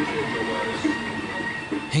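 Bar room ambience: a steady background noise with faint voices and a few thin steady tones.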